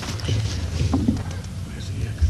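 Low rumble picked up by the council-table microphones, with scattered soft knocks and rustles and a brief muffled voice about a second in.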